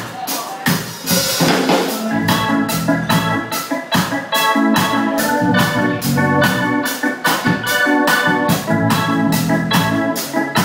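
Live ska band playing with a steady drum beat; from about a second in, organ-style keyboard chords are held under the beat, with a cymbal crash near the start.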